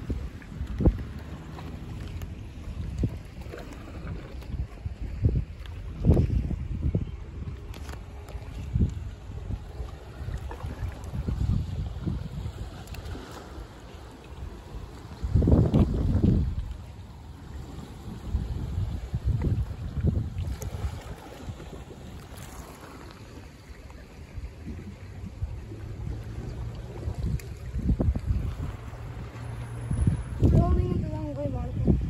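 Wind buffeting a phone's microphone in irregular low gusts, the strongest about halfway through, with sea water moving against the rocks underneath.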